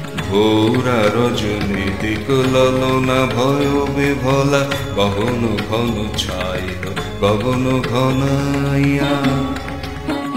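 Title song of a TV serial: a singing voice gliding between notes, with instrumental accompaniment over a steady low drone.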